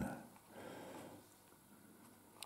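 Quiet room tone at a workbench, with a faint soft noise lasting about a second near the start.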